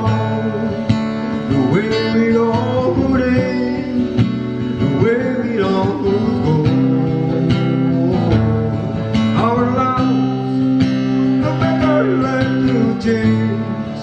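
Steel-string acoustic guitar (a Tanglewood) played in a slow country ballad, with a man singing along into a microphone.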